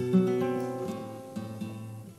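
Flamenco guitar: a chord strummed at the start rings out and slowly fades, with a few lighter strokes over it.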